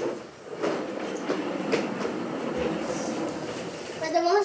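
Hard plastic wheels of a ride-on toy car rolling across a tiled floor: a continuous rattling rumble with scattered clicks, starting about half a second in, as the car approaches.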